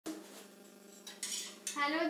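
Stainless steel dishes and utensils clinking and scraping as they are handled on a kitchen counter. There is a clink with a short ring at the start and a couple of brief scrapes about a second in.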